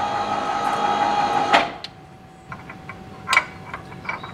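Electric motor of the drop tower's hoist running with a steady whine while the 100 kg weight carriage moves in its steel frame. It stops with a clunk about one and a half seconds in. Light metallic clicks of hardware being handled follow, with one sharper click past the middle.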